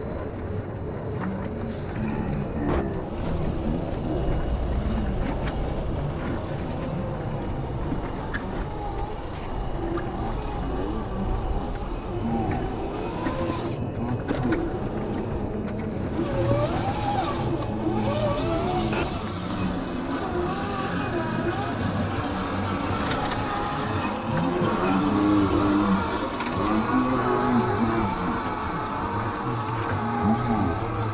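Electric motors and gear drives of 1/10-scale RC crawler trucks whining as the trucks, towing small trailers, crawl one after another over wet river rocks, the pitch wavering up and down with throttle.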